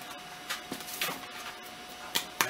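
A few soft clicks and rustles of plastic toy packaging being handled, with a faint steady hum underneath.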